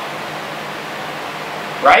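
A steady, even hiss of room noise in a pause between sentences, ending with a man's short spoken "Right?" near the end.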